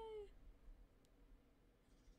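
The last of a woman's long, drawn-out "yay" in a high voice, slowly falling in pitch and fading out within the first half second, then near silence with one faint click about a second in.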